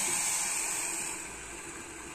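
Water poured in a thin stream into a steel pot of sugar, a steady splashing hiss that softens about a second in, as the sugar syrup is started.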